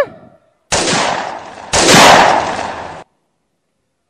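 Two loud, sudden bursts of noise, blast-like, the second louder than the first, cutting off abruptly about three seconds in.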